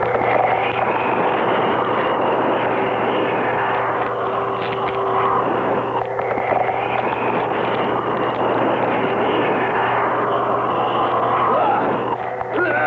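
Steady rushing, roaring noise from the film's soundtrack, with a few long held tones underneath and no breaks.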